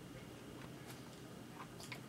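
Faint chewing of a large mouthful of frosted cupcake, with a few soft mouth clicks about a second in and near the end.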